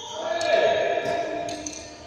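Badminton play in a large, echoing hall: rackets strike shuttlecocks with several sharp clicks, among squeaks of shoes on the court floor.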